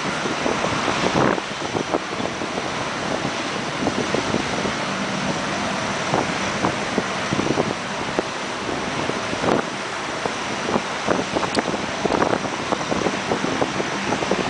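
Wind buffeting a camcorder microphone in irregular gusts, over the steady wash of ocean surf breaking on the shore.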